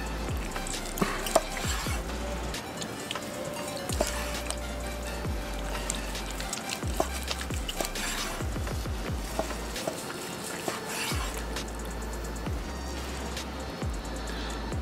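Knife slicing across the grain through the crusted bark of a smoked brisket flat on a wooden cutting board: a crackle of scrapes and small taps. Background music with a bass line plays underneath.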